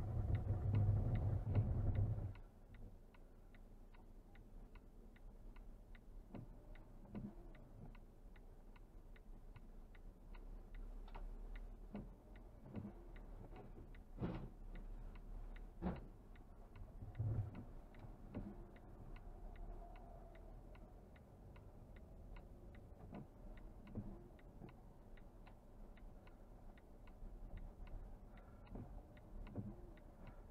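Car's turn-signal or hazard-light relay ticking steadily and evenly inside the cabin, over a low road rumble, with a few louder knocks around the middle.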